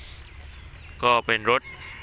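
A man's voice says a few words over a steady low background rumble, and a faint high-pitched animal call sounds in the background near the end.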